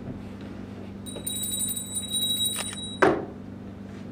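A high-pitched electronic ringing with a fast pulse lasts about two seconds, then is cut off by a single sharp thump. A steady low hum runs underneath.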